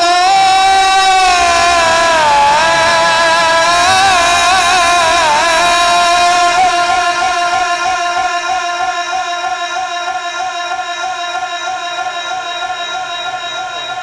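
A man's melodic Quran recitation (tilawat) over a microphone, with ornamented, sliding pitch. It ends on a long wavering held note that slowly fades away.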